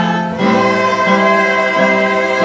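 A church choir singing together, holding sustained notes that move to a new pitch about every half second.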